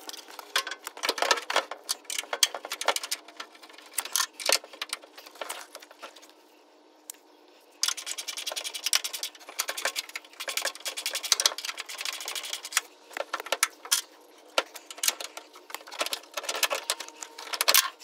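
Rapid metallic clicking and rattling from hand-tool work at a car door's hinge. The clicks come in dense runs, ease off briefly around six seconds in, then run on almost continuously.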